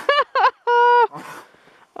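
A woman's startled vocalising: two short laugh-like yelps, then a held, high-pitched "ooh" lasting under half a second, followed by a brief rustling scuff.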